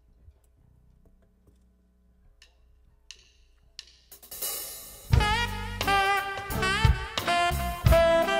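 A few soft ticks, then a cymbal swell and, about five seconds in, a jazz quartet comes in together: saxophone carrying the melody over drum kit, electric bass and keyboard.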